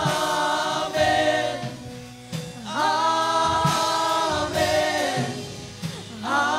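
Group of worship singers drawing out long held "amen" notes in a gospel worship song. The notes swell and then fade away twice.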